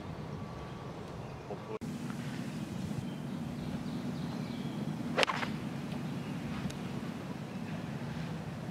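A golf club striking the ball on a full fairway shot: one sharp crack about five seconds in, over a steady outdoor background.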